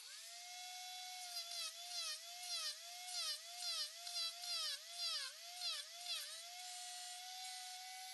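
Angle grinder mounted in a jig comes up to speed with a high whine, then bogs down in pitch about twice a second as a steel bar is pushed into the spinning wheel, throwing sparks. Near the end it runs steady and unloaded.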